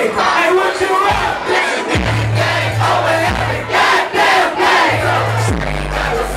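A crowd of voices shouting and singing along over a loud hip hop track at a live show. Deep bass notes come and go, entering about two seconds in.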